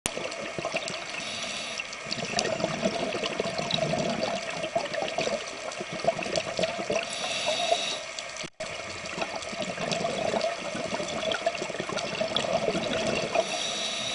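Underwater bubbling and rushing from a scuba diver's breathing through the regulator, with a short hiss about every six seconds. The sound drops out for an instant a little past the middle.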